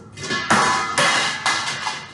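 Metal pizza pan (perforated aluminium) clanging as it is knocked or set down, about four ringing strikes roughly half a second apart in the second half.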